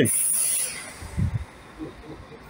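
Short burst of compressed air hissing from a coach's pneumatic system, lasting about half a second, followed by a soft low thump about a second in.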